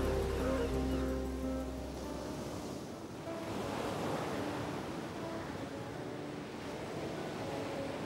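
Ocean surf washing on a beach, an even rush of waves, under soft background music; a low musical drone fades out in the first two seconds.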